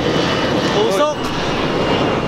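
Loud, steady roar of heavy city road traffic, with a person's voice briefly about a second in.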